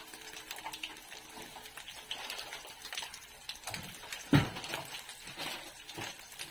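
Dried salted fish (tuyo) frying in shallow oil in a non-stick pan, a steady crackling sizzle with small spits as two more fish are laid into the hot oil. A single loud thump comes about four seconds in.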